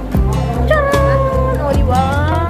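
Background music with a steady bass beat and a long held, sliding melody line.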